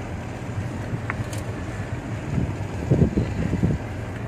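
A steady low engine hum with some wind noise, and a few soft knocks about three seconds in.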